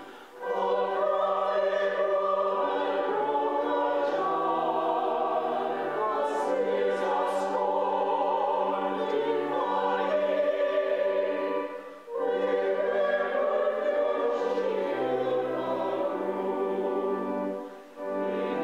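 Church choir singing an anthem in sustained phrases, with short breaths between phrases about twelve seconds in and again near the end.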